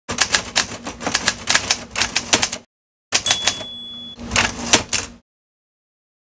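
Typewriter keys struck in quick, irregular clatter, a short pause, then a bell-like ding about three seconds in and a few more keystrokes, stopping a little after five seconds.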